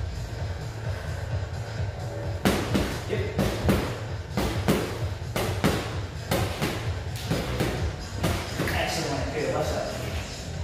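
A run of sharp strikes, about two to three a second, on a free-standing punching bag, from gloved punches and kicks. They start about two and a half seconds in and stop about a second and a half before the end, over steady background music with a beat.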